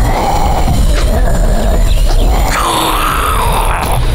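A person playing a zombie gives a drawn-out, wavering groan near the end, over background music with a heavy low rumble.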